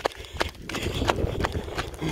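Running footsteps in sandals on a dirt road, sharp slapping strokes at a steady pace of about three a second, with wind rumbling on the microphone.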